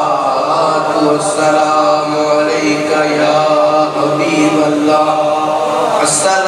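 A man's voice chanting Arabic devotional recitation into a microphone, drawn out in long held notes that shift pitch only every second or so.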